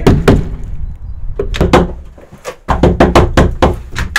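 Hands pounding on a glazed shop door: a few loose bangs, a short lull, then a fast flurry of about eight knocks in the second half.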